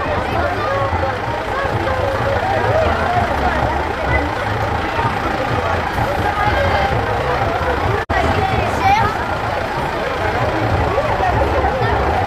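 Several children chattering at once over a steady low engine hum from the float's vehicle, with a very brief break in the sound about two-thirds of the way through.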